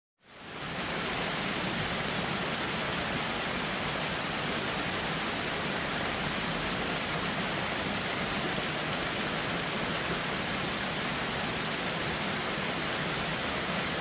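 Steady rushing roar of a waterfall, fading in over the first second and then holding even.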